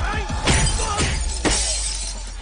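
Fight-scene hit sound effects: three sharp impacts about half a second apart, the last trailing off into a hissing whoosh, over a background music score.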